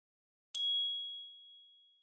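A single bright electronic chime from a logo sting: a sudden high ding about half a second in that rings out and fades over about a second and a half.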